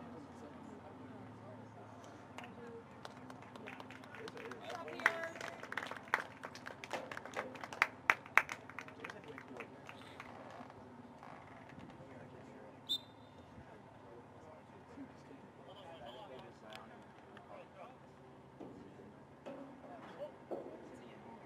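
A burst of sharp, irregular handclaps close by, about five to eight seconds in, with one more clap a few seconds later, over faint distant voices of players and spectators.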